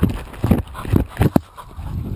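Dogs biting and tugging at a wooden stick right at the microphone: irregular knocks and scrapes of teeth on wood, about five in two seconds, with rumbling handling noise.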